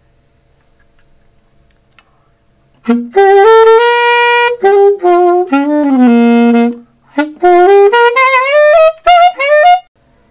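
Alto saxophone played with a bell mute fitted. A short phrase of held notes starts about three seconds in, breaks briefly, then ends with a rising run of quicker notes. The horn still sounds loud: the mute barely quietens it, and the player judges it useless.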